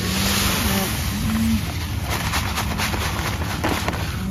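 Coarse kiln-dried solar salt pouring from a paper sack into a metal tub, a steady hissing rush of grains that is loudest in the first second or so.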